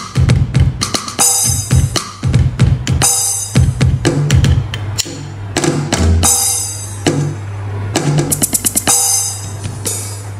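Electronic percussion pad (octapad) struck with sticks, playing a fast drum-kit pattern of sharp hits. A steady low bass tone comes in about six seconds in.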